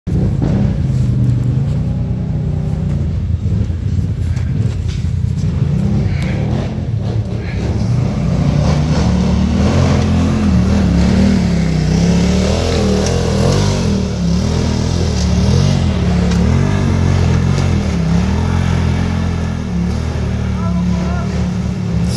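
Side-by-side UTV engine revving up and down over and over as the vehicle crawls up a steep, rocky trail under load.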